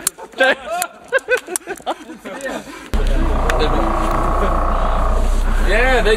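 People talking in short bursts; about three seconds in, a loud steady low rumble starts abruptly and carries on under the voices.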